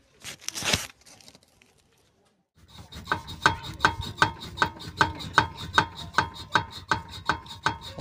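Volvo XC70 front steering and suspension joints knocking in a steady rhythm, about two to three knocks a second, as the wheel is rocked back and forth; the knocks come from play in a worn tie rod and lower ball joint. A short rustle comes first.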